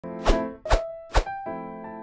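Intro jingle music: three sharp popping hits about half a second apart, each with a pitched note, then held electric-piano notes.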